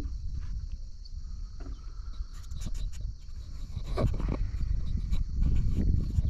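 River ambience: a steady high buzz of insects from the banks over a low rumble, with a few light clicks and knocks scattered through.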